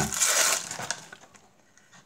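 Crinkling of thin plastic wrapping being pulled off a boxed deck of playing cards, dying away after about a second.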